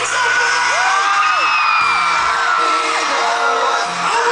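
Live pop song heard from the audience: amplified music with the group's vocals, and fans whooping and screaming over it. The bass drops away about a second in.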